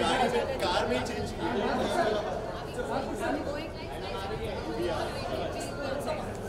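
Several voices talking over one another in a busy chatter.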